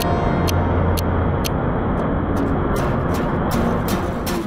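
Background music with a regular beat over the steady running noise of a catamaran river ferry's engines and churning wake.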